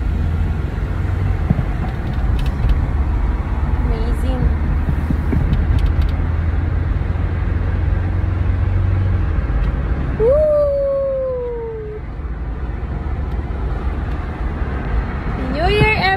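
Steady low rumble of road and engine noise inside a moving car's cabin. About ten seconds in, a single drawn-out vocal note slides downward for a second or two.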